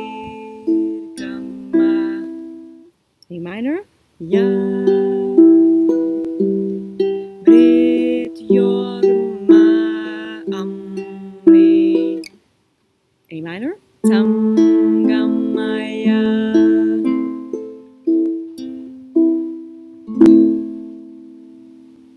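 Ukulele fingerpicked slowly in a 1-3-2-4 string pattern on A minor and E minor chords, each plucked note ringing out, with a woman's voice singing a Sanskrit mantra softly over it. The playing stops briefly twice before picking up again.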